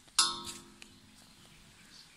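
Metal grip handle knocking against the stainless-steel tube of an outdoor fitness rail: one sharp clang about a fifth of a second in that rings and fades within half a second, followed by a couple of faint clicks.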